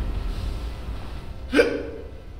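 A man crying, with one short, sharp sob, a hiccup-like catch of breath, about one and a half seconds in.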